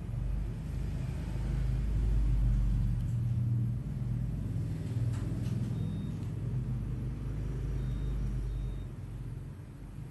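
A low rumble that swells over the first couple of seconds, holds, and fades about nine seconds in.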